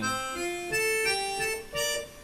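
Yamaha PSR-S670 arranger keyboard on an accordion voice playing a short melody phrase of single sustained notes, with a brief break and one detached note near the end.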